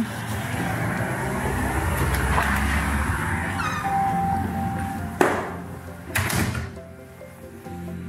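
Background music, with the clinic's glass-paned front door being opened and shut: handling noise for the first few seconds, then two sharp knocks about five and six seconds in.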